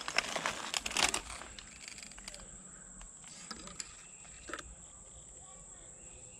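Footsteps crunching through dry leaf litter and brush for about the first second, then going quiet, with a steady high insect drone running under it all.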